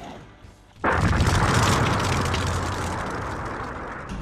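Explosion-like boom sound effect for a title-card transition: it hits suddenly about a second in, with a low rumble under it, and fades slowly over the next few seconds.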